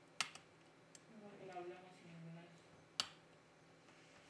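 Two small, sharp clicks, one just after the start and one about three seconds in: a pry tool popping press-fit flex-cable connectors off a smartphone's logic board as the rear camera connectors are disconnected.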